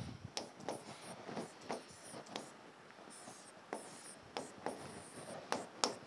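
Pen on a smart-board screen drawing straight lines: a string of short, scratchy strokes and taps.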